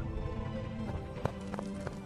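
Soft background score of held, sustained tones, with a handful of light, separate taps in the second half.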